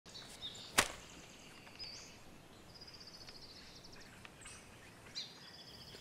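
Faint birds chirping and trilling in the background, with one sharp click just under a second in.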